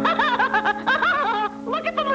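Cartoon mouse laughing in a high-pitched, wobbling voice, with a short pause about three-quarters of the way through, over a held orchestral chord.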